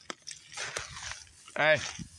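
Footsteps crunching on dry grass and sandy ground, with a couple of sharp clicks, as someone walks along a woodland path.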